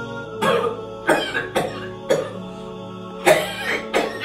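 A man coughing harshly, six separate coughs spread over the few seconds, over quiet background music.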